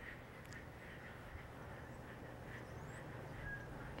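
Quiet scrubbing of a rubber curry comb worked hard over a pony's shedding coat, over a low steady hum, with faint short high chirps now and then.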